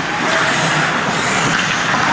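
Ice hockey skates scraping and carving across rink ice during play, a steady hissing rush.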